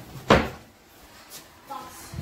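A kitchen cupboard door being opened, with one sharp knock about a third of a second in.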